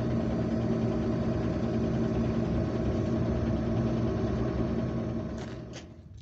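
JCB tractor engine running steadily, heard from inside the cab, under load from the hydraulics as the trailer body is tipped. The hum fades out near the end.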